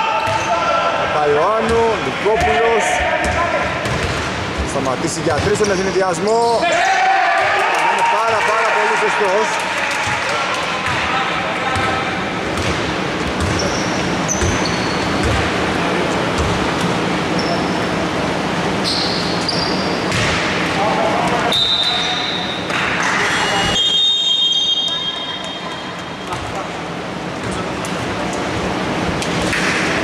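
Basketball game play on a wooden indoor court in a large hall: the ball bouncing repeatedly, with short high squeaks from players' sneakers on the floor. A commentator's voice comes in now and then.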